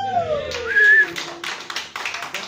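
Audience reacting as a live song ends: one long falling whooping cheer, a short high whistle about half a second in, and scattered clapping starting up.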